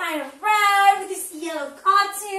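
A woman's high, animated voice in a sing-song delivery, with some syllables held briefly on a pitch.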